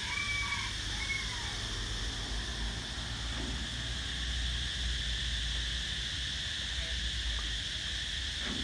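Steady outdoor ambience: a continuous high-pitched insect chorus, with a low rumble underneath.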